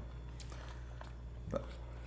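A person quietly chewing a mouthful of soft, eggy mug pudding, with a few faint mouth clicks over a low steady hum.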